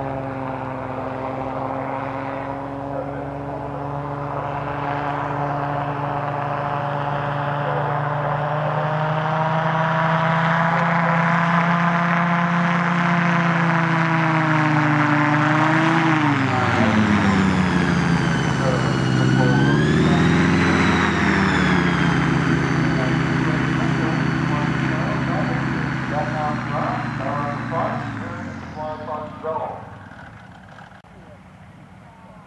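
I-TEC Maverick powered-parachute flying car's engine and propeller running steadily at power, the pitch slowly creeping up. About halfway through the pitch swoops down and back up, then holds steady before fading away near the end.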